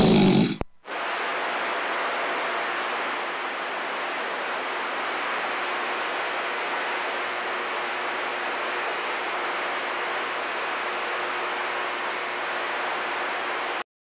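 A radio transmission cuts off about half a second in. It is followed by the steady hiss of CB radio static from a receiver with the squelch open on a dead channel, which stops abruptly at the very end.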